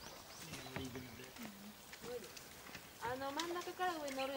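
Human voices calling out with no clear words, with a longer, louder call from about three seconds in.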